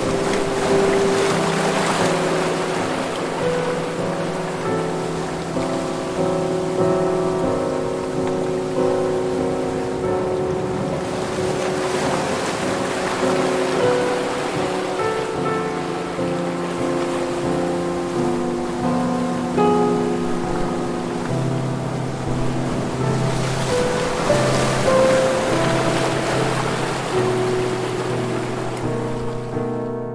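Soft instrumental music of held, slowly changing notes over ocean surf, with waves washing in three times, swelling and fading about every ten seconds.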